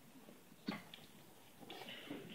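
Hushed room noise in a large hall, with one short knock about two-thirds of a second in and a brief soft rustle near the end.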